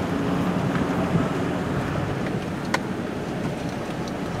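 Steady engine and road noise heard inside a slowly moving car, with one short sharp click near the end of the third second.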